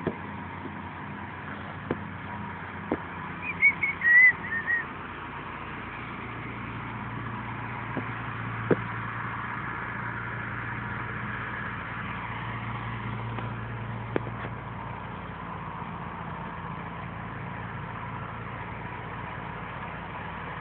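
Steady outdoor background noise with a low engine hum that grows louder through the middle and then eases. A few short high chirps come about four seconds in, and a few faint clicks are scattered through.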